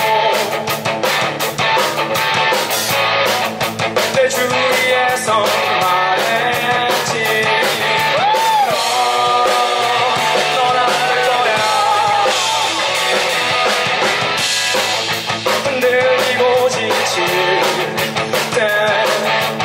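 Live band playing a song: a man singing into a microphone over electric guitar, electric bass guitar and a drum kit.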